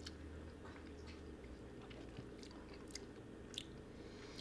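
Faint mouth sounds of whiskey being tasted: a few small lip and tongue clicks while the sip is held and worked around the mouth, over a low steady room hum.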